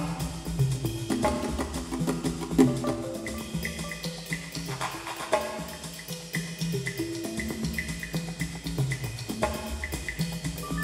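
Live improvised percussion-and-electronics music: a busy, even pattern of high ticks over a repeating bass line, with short pitched percussive strokes scattered through it.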